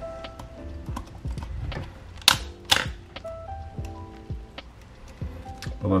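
Small sharp clicks and ticks of metal parts and a screwdriver working the exposed film-advance mechanism of an Olympus OM-10 35 mm SLR, the loudest two clicks a little under half a second apart about halfway through. Soft background music with sustained notes runs underneath.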